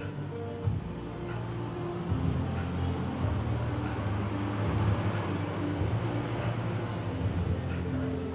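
Background music with a steady bass line and held notes.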